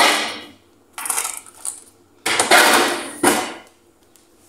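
Plastic freezer drawer being handled and frozen food packets and containers shifted inside it, in three noisy bursts of scraping and rattling.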